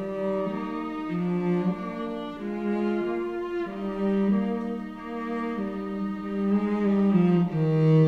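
A small string ensemble of violins and cello playing a slow passage of held, bowed notes, the chords changing every second or so.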